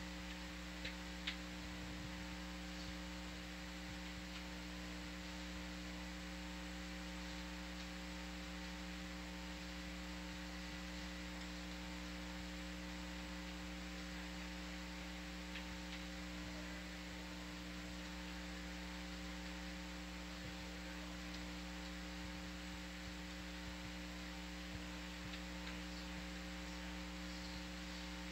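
Steady electrical hum made up of several constant tones over a low hiss, with two faint clicks about a second in.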